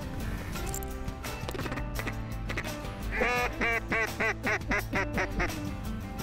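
A rapid series of about ten duck quacks, about four a second, starting about three seconds in, over steady background music.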